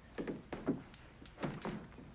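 A door being unlocked and opened: a series of short clunks from the lock, bolt and latch, in two quick groups.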